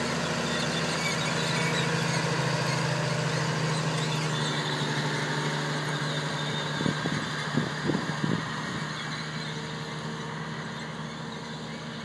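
Tractor diesel engine running steadily under load as it tows a Carrier Turf CRT-425 cultivator across turf, with a few short louder knocks about seven to eight seconds in. The sound fades toward the end as the tractor moves away.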